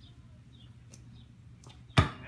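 Quiet outdoor background with a few faint, short bird chirps, ending in one sharp thump.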